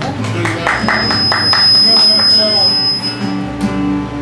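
A small band playing: acoustic guitars strummed in a steady rhythm over an electric bass line. A thin, steady high whine sounds over the music for about two seconds in the middle.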